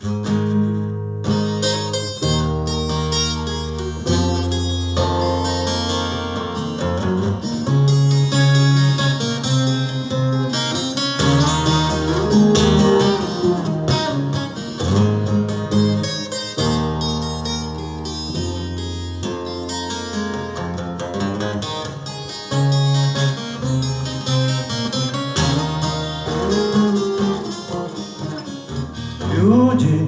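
Twelve-string acoustic guitar played alone as a song's introduction, picked and strummed chords changing every second or two in a steady pattern.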